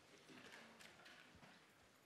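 Near silence: faint lecture-hall room tone with a few soft taps.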